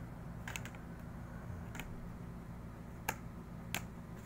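Postcards being handled and shifted on a pile, giving four short, sharp clicks and taps over a low steady hum.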